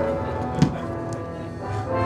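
Live keyboard music playing held chords, with a single thump just over half a second in.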